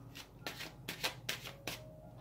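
Oracle cards being handled: a quick, irregular run of about seven crisp card taps and flicks as cards are set down on the pile and the next card is drawn from the deck.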